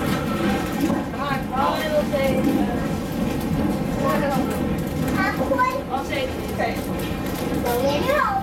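Indistinct chatter of children and other passengers inside a vintage railway passenger coach, over the steady low rumble of the car rolling along the track.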